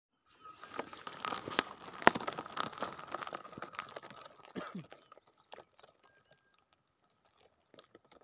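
Close crunching and rustling of dry straw and the phone being handled as it is set down on the mulched ground, busy for about five seconds, then fainter scattered crunches of footsteps on the dry straw.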